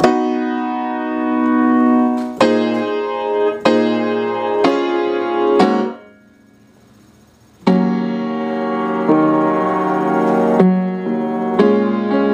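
Samick piano playing sustained chords, a new chord struck about every second, with a gap of about a second and a half just past the middle before the chords start again.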